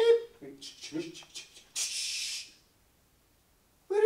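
A man's voice making short vocal calls, then a brief hiss about two seconds in, followed by a second of dead silence.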